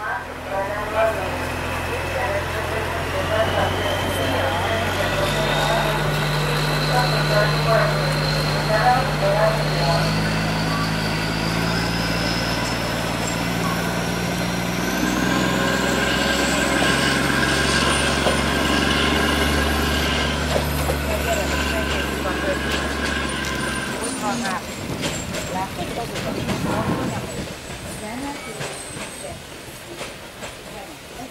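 Mk45 narrow-gauge diesel locomotive pulling away with its train. The engine note steps up several times as it gathers speed, while a high whine climbs steadily over the first fifteen seconds or so. The engine sound ends about 24 s in, leaving quieter rolling noise with scattered clicks as the carriages pass.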